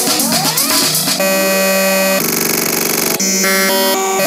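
Electronic synthesizer music playing back from an FL Studio project. Several rising pitch sweeps come in the first second, then held synth chords that change about once a second, one of them buzzing and fluttering.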